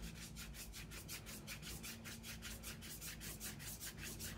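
Watercolour pencil scribbling on paper: faint, quick, even back-and-forth shading strokes.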